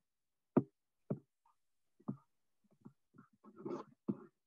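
Scattered soft knocks and clicks from someone handling a computer at a desk, about five of them at uneven intervals, then a short flurry of taps with a brief rustle near the end. They are picked up by a video-call microphone.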